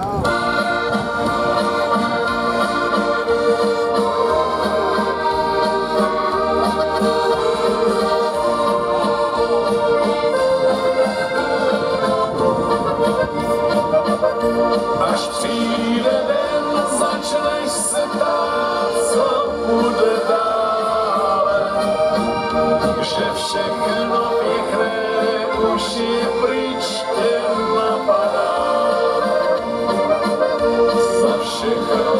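Live accordion band music: two accordions playing with keyboard accompaniment, amplified through a stage sound system.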